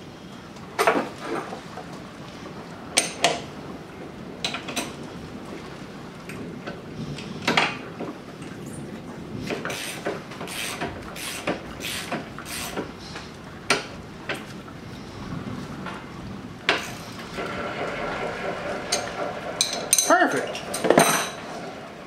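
Steel hand wrenches clinking and knocking against a bench vise and a mower-deck gauge wheel's bolt as its nut is tightened: many separate sharp metal clinks, irregularly spaced.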